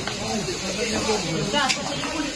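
Indistinct voices of rescue workers talking in short bursts over a steady hiss of background noise.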